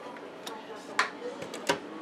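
A few sharp clicks and light knocks of a kitchen wall cabinet door being handled and opened, four in all, the loudest about a second in and again near the end.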